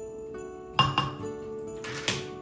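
A few sharp clinks of a spatula against a glass mixing bowl, two close together about a second in and another near the end, over soft background music with steady held notes.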